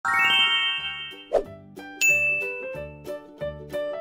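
Intro sound effects over light background music: a bright shimmering chime at the start, a short pop, then a second sharp ding about two seconds in, with a steady bass beat running underneath.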